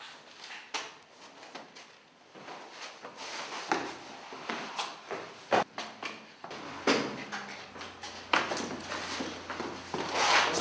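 Irregular scuffs and rustles of clothing brushing against a wall, mixed with knocks and shuffling footsteps on stairwell steps, as a man is pushed and slides down the wall. There are a few sharper knocks in the second half. The sound is slightly boxy in the small stairwell.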